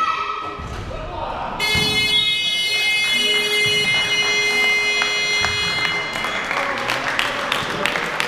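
Sports-hall game buzzer sounding one long steady tone for about four seconds, starting suddenly a second and a half in, signalling a stop in play. Voices and sharp shoe or ball knocks come through around it.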